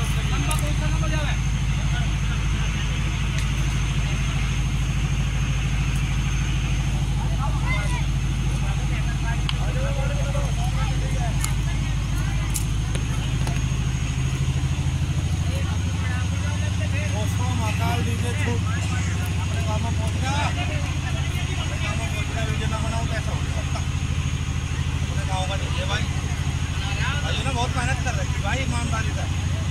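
An engine running steadily at idle, a constant low hum whose pitch shifts slightly about halfway through, with people talking faintly over it.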